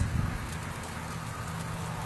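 Ribs sizzling on a charcoal grill: a steady hiss with a low hum under it.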